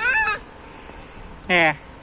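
A toddler's short, high-pitched squealing vocalisation at the start, then about a second and a half later a brief word from an adult voice.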